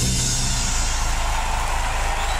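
The final chord of a live disco band ringing out and fading about half a second in, giving way to a crowd applauding and cheering.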